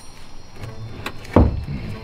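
A single sharp knock about one and a half seconds in as the transmission case is worked into place against the engine, with faint music underneath.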